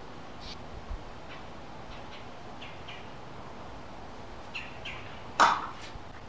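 Small birds chirping in scattered short, high calls over a steady background hum, with one louder, sharp sound near the end.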